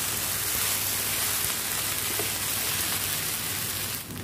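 Stir-fried Hakka noodles sizzling steadily in a hot pan over a high flame while being tossed with a spatula.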